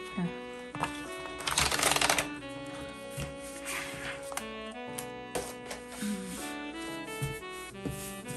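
Instrumental background music throughout, with a loud crackling rustle of paper about a second and a half in as planner pages are pulled off the plastic discs of a disc-bound planner, and a few lighter paper clicks later.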